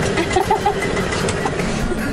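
Golf cart driving along a sandy road: a steady running noise from the cart as it moves.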